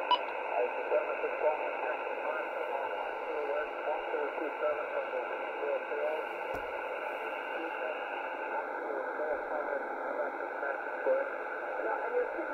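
Shortwave single-sideband voice reception on an HF aeronautical channel: a distant voice heard through steady static, too weak to make out. There is one click about halfway through, and the sound turns slightly duller for the last few seconds.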